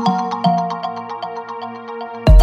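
Progressive house track in a breakdown with the kick drum out: short plucked synth notes over a held pad and fast ticking percussion, getting gradually quieter.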